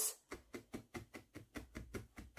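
A 38-star felting needle stabbing rapidly into a loose wool core on a felt topper over a hessian mat: a quick, even run of faint soft taps, about six a second. The wool is being lightly tacked together until it holds its rough shape.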